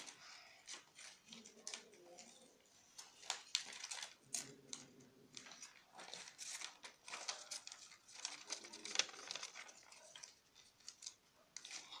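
Scissors snipping through notebook paper, with the paper rustling and crinkling as it is turned in the hands: a quick irregular series of snips and crinkles.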